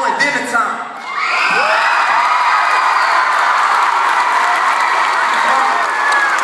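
A large audience of teenagers bursts into cheering and high-pitched screaming about a second in, and keeps it up loudly.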